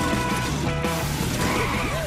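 Cartoon soundtrack: background music with a steady bass pattern, with wavering, up-and-down cartoon animal voices over it.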